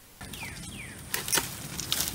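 A few sharp clicks and snaps from loppers working on brush branches, over a faint outdoor background.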